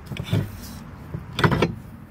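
Two short scrapes and knocks of steel wheel-lift parts being handled, the second, about a second and a half in, the louder.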